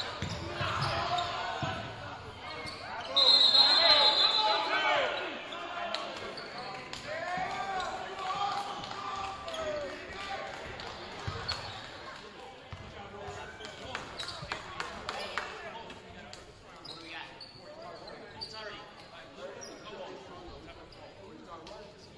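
Basketball game sound in a gym: a referee's whistle blown once for about a second, about three seconds in, over players and spectators shouting, with the ball bouncing on the hardwood. The shouting dies down in the second half as play stops.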